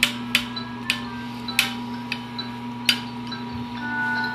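A handful of sharp taps and clicks, about five spread unevenly over four seconds, from things being handled on a tabletop, over a steady low electrical-sounding hum.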